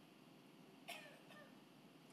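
Near silence, broken about a second in by one brief, faint, high cry that falls in pitch.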